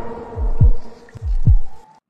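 Heartbeat sound effect in a film score: deep thuds, each dropping in pitch, coming in lub-dub pairs twice, over a steady low drone that fades out near the end.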